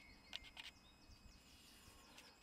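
Near silence: faint outdoor ambience, with two soft brief clicks in the first second and a few faint high chirps.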